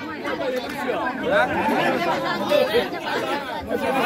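Several people talking over one another: chatter from the ringside crowd and corner men, with no single clear voice.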